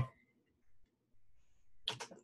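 A quiet pause with faint room tone, then a short, sharp intake of breath near the end.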